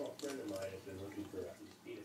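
A person chewing a bite of raw cucumber, with faint muffled voice sounds made with the mouth full.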